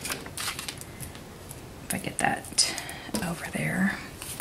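Paper sticker strips and sheets being handled and pressed onto a planner page: light rustling and small clicks and taps. A brief murmured voice comes twice, in the middle and near the end.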